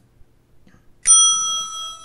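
A single bright bell-like ding about a second in, ringing out and fading over about a second. It is an edited-in sound effect marking a point scored, added as another Mickey-head score icon appears.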